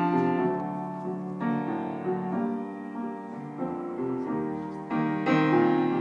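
Solo piano playing a slow introduction of sustained chords, with a new chord struck right at the start, another about a second and a half in, and a louder one about five seconds in.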